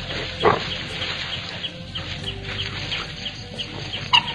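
A pack of Javan dholes at a deer carcass, with one short, sharp yelp about half a second in. A steady run of short high chirps, about four a second, goes on behind it.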